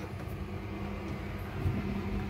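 A steady low hum with a faint rumble beneath it.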